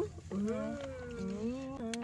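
A young woman's long drawn-out hum, "mmm", held for about a second and a half with a slight waver in pitch.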